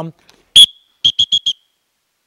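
Dog training whistle blown: one short, loud, high blast (the sit command), then a quick run of four shorter blasts at the same pitch (the come command).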